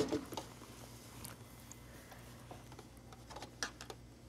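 Fabric being handled and positioned at a sewing machine: faint rustles and a few soft ticks over a low steady hum, with the tail of a louder rustle at the very start.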